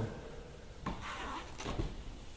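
A single short, sharp knock about a second in, followed by a softer low thud near the end.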